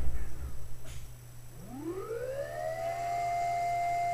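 A low rumble with a few thuds in the first second, then a tone that rises smoothly over about a second and a half and holds steady at a high pitch, like a siren winding up.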